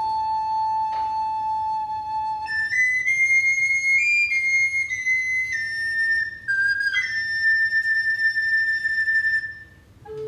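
Recorders playing a slow, sustained melody in a single line. A middle-range held note passes at about two and a half seconds to long, high held notes that stop just before the end.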